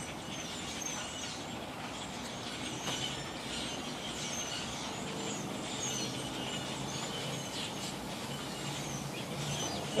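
A large flock of birds calling from the trees: many short, overlapping chirps throughout, over a steady background hum.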